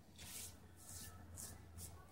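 Faint rubbing of a hand smoothing a lotion-soaked body wrap applicator cloth onto bare skin, in a series of soft swishing strokes.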